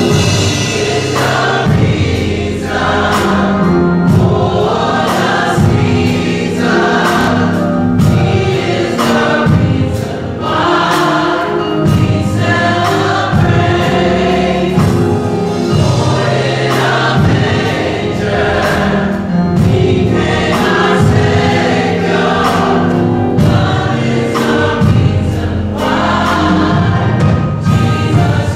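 Church gospel choir singing together, backed by instruments with a steady beat and a bass line moving in steps.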